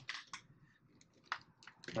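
A few faint clicks and light knocks about a second in, as a motorcycle helmet and its straps and fittings are handled and turned over.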